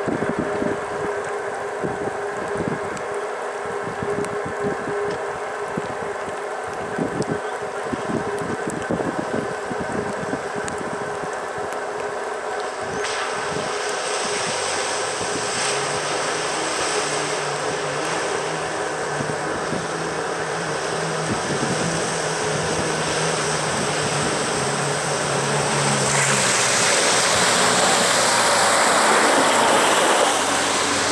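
Floodwater rushing over a ford, with wind gusting on the microphone. From about halfway in, a vehicle's engine hum grows as it drives through the flood, and near the end the splash and wash of its bow wave swells as it comes close.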